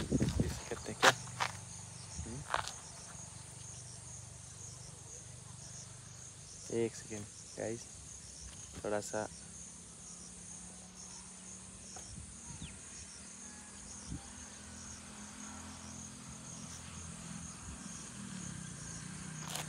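Insects chirping steadily in a high, evenly pulsing drone, over a faint low hum, with a few brief voices and clicks.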